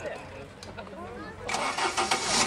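Faint background voices, then about one and a half seconds in a man's loud voice starts speaking out in a declaiming manner.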